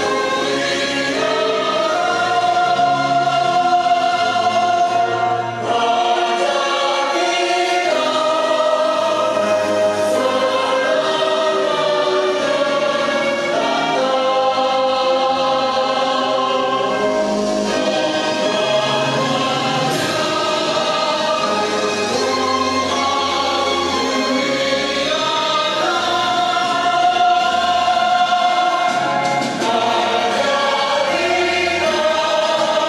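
A national anthem played as a recording, a choir singing with orchestral accompaniment in held, steady phrases.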